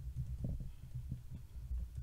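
Typing on a computer keyboard, heard as a run of irregular dull low thumps, with a low hum underneath.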